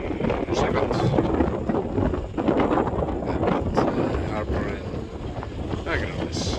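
Gusty wind buffeting the phone's microphone: a rumbling noise that swells and dips with the gusts.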